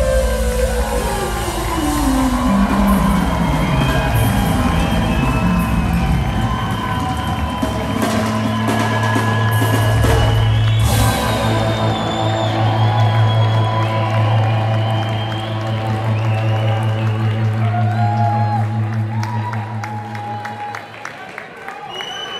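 Live rock band playing. A long downward glide in pitch at the start settles into sustained chords over a held low bass note, which fades near the end.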